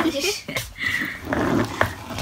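A toddler's wordless grunts and squeals as he tugs at a fabric suitcase, with a couple of sharp knocks from the case near the end.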